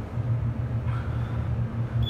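Steady low hum inside a US hydraulic elevator cab as it travels down between floors.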